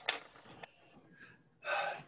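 A man's sharp intake of breath near the end, taken just before he speaks. Near the start there is a click and a short rustle, followed by a few faint small noises.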